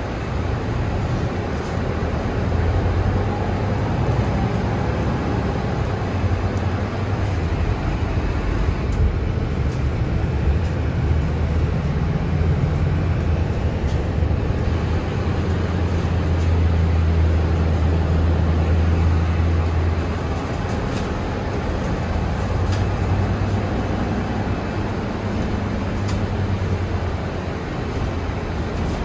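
A Mercedes-Benz Citaro city bus heard from inside the cabin while running: a low engine drone over road and body noise. The drone grows a couple of seconds in, is strongest about two-thirds of the way through, drops back soon after and builds again near the end.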